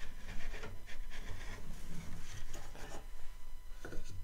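Wooden boards being handled on a workbench: irregular scraping and rubbing of wood on wood and on the bench top, with light knocks and a sharper knock near the end.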